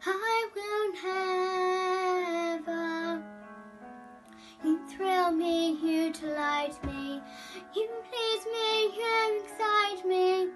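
A young girl singing solo, holding long notes, over a soft instrumental accompaniment. She breaks off briefly about three seconds in, then sings on.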